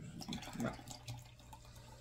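Soft sips of soda from a plastic cup: faint liquid sounds and small clicks, with a brief "yeah" in the first second.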